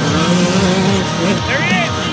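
Rock music with dirt bike engines revving through it, their pitch rising and falling.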